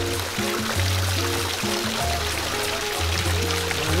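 Background music with a bass line stepping between held notes, over faint running water pouring into a pond.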